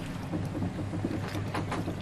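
A strong gust of wind blowing over a sailboat at anchor: a steady rushing noise with a low hum underneath.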